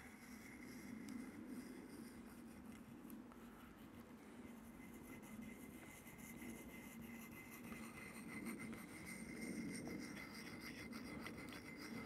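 Faint scraping of a steel bypass secateur blade being rubbed gently on an oiled fine diamond sharpening stone, the blade pushed away along the stone at the edge's angle.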